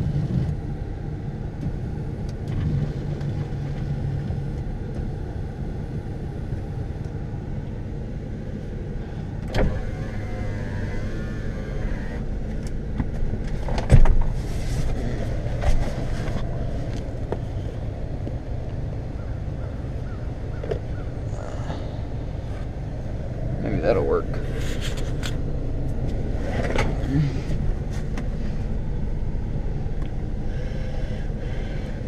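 Dodge Ram pickup's engine running with a steady low rumble, heard from inside the cab, with a few knocks and clunks from the driver's seat being worked on, the loudest about halfway through.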